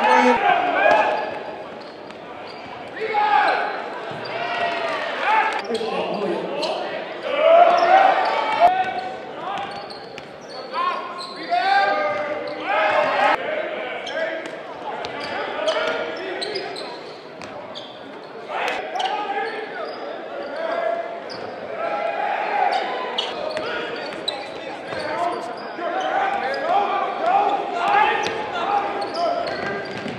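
Live sound of a basketball game in a school gym: players and spectators shouting and calling out, with a basketball bouncing on the hardwood floor now and then.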